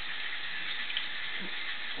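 Steady sizzle of chicken tenders frying in hot grease, an even hiss.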